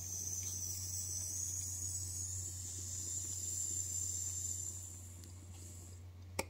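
Cannabis concentrate sizzling on the hot nail of a glass dab rig as it is inhaled: a steady high hiss that fades out about five seconds in, over a faint low hum.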